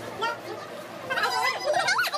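High-pitched, quickly wavering vocal sounds begin about halfway through and grow louder.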